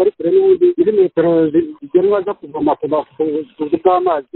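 A person speaking: continuous talk with short pauses, likely in a language the recogniser failed to write down.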